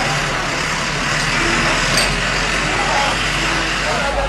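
Heavy dump truck driving slowly past close by, its engine giving a steady rumble.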